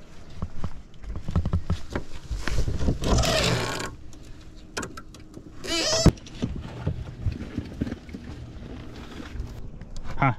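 A crappie flopping and slapping on a boat deck while being held down for measuring: a run of irregular knocks and thumps, with a rush of noise about three seconds in and a sharp loud knock about six seconds in.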